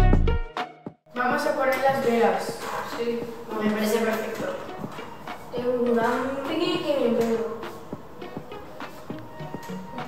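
Bass-heavy background music fades out within the first second. After a brief dropout, indistinct chatter of young voices follows, with a few light taps.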